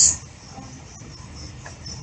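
Quiet room noise after a spoken word ends, with a few faint clicks.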